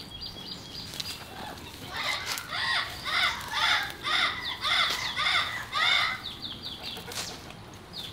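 A bird calling in a run of about eight short, repeated calls, roughly two a second, with thin high chirps before and after. Underneath is a faint rustle of weeds and mulch being pulled up by hand.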